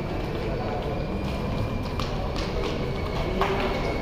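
Indoor hall ambience of indistinct background voices and a low hum, with a few faint footsteps on a tiled floor.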